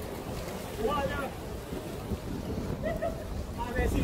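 Wind buffeting the microphone in a constant low rumble, with short voices calling out now and then.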